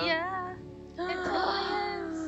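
A woman's high-pitched excited squeal whose pitch wavers and falls, followed about a second later by several voices exclaiming at once, over soft background music.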